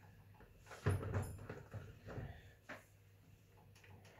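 Kitchen handling sounds: vegetables taken from a plastic mixing bowl and set into a roasting tray, a few soft knocks and rustles, the loudest about a second in.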